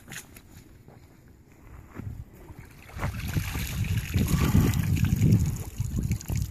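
Muddy puddle water splashing and sloshing as an FN SCAR rifle is pulled out of it and water runs off it. There are a few light knocks in the first two seconds, then the splashing grows much louder about three seconds in.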